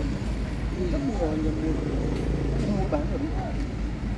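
People talking in the background, with a couple of short stretches of voice, over a steady low rumble.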